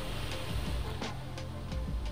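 Background music with a light beat: short repeated notes over a bass line, with a crisp tick about every half second.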